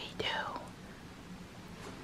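A woman's voice says one short word, then quiet room tone with a faint steady hum.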